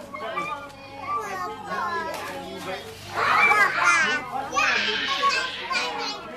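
Young children shouting and squealing excitedly as they play, several voices overlapping. The voices get louder and higher in the second half.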